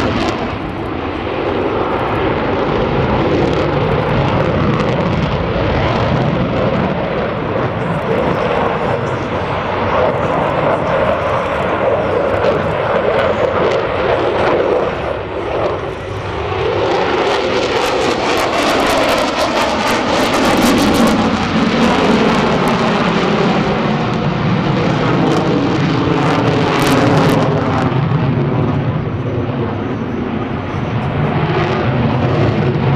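Lockheed Martin F-22 Raptor's twin Pratt & Whitney F119 turbofans, loud and continuous as the jet maneuvers overhead, the pitch sweeping down and back up as it turns and passes. The sound dips briefly about halfway through, then builds again.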